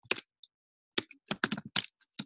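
Typing on a computer keyboard. One keystroke comes at the start, then after a short pause a quick run of about five keystrokes.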